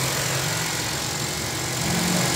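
Honda CR-V four-cylinder petrol engine idling steadily, running normally now that the faulty starter solenoid switch has been replaced.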